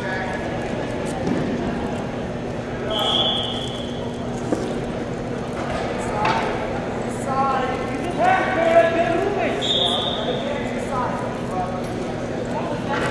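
Voices of coaches and spectators calling out and talking in a large sports hall, over a steady hum. Two short, high, steady tones sound, one about three seconds in and one near ten seconds.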